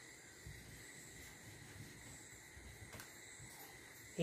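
Near silence: room tone with a faint steady hiss and one faint click about three seconds in.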